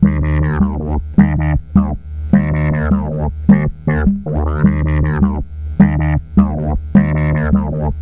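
A Eurorack modular synthesizer playing a steady low drone with a pitched note above it. The note's brightness swells open and shut over and over, with long rises and falls of about a second between short blips: envelopes from a 4ms Pingable Envelope Generator, retriggered in time with its divided ping clock.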